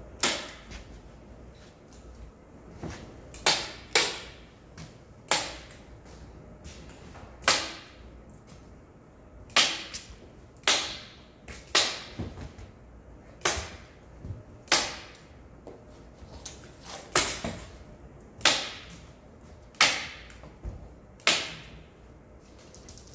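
Staple gun firing into the wooden frame of a lattice panel, fastening a sheet of paper along its edge: about sixteen sharp snaps, one every one to two seconds at an uneven pace.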